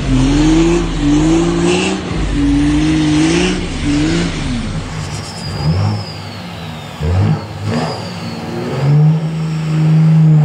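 Cummins inline-six turbodiesel in a Dodge Ram pickup held at high revs through a smoky burnout, the engine note wavering up and down. After a cut about five seconds in, a second Ram diesel is heard more quietly with a high whistle falling in pitch, then near the end its engine is held at a high, steady pitch as it starts its own burnout.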